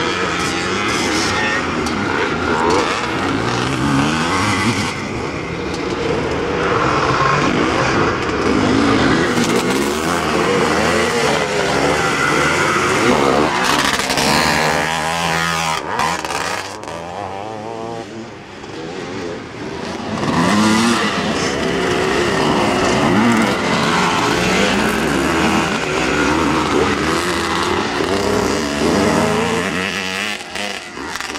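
Several motocross motorcycles racing, their engines revving up and down in repeated rising and falling sweeps as riders accelerate out of turns and over jumps. The sound dips briefly a little past the middle, then returns at full volume.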